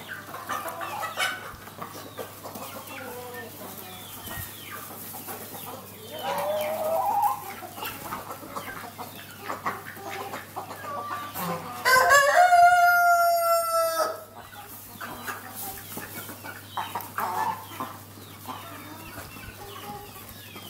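Chickens clucking, with a rooster crowing once about twelve seconds in: one long, loud call lasting about two seconds, its pitch falling slightly at the end.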